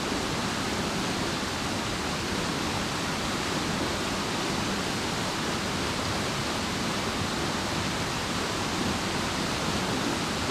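Steady rush of a fast, rocky mountain stream, water running over rocks and riffles in an even, unbroken roar.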